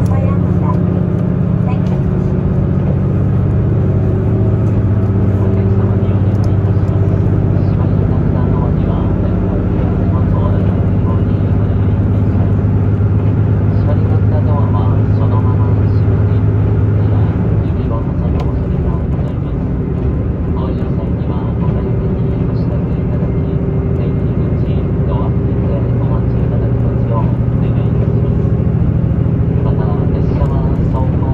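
Running sound heard inside the cabin of a diesel limited express train under way: a steady low engine drone with wheel and rail noise. The engine note changes about halfway through.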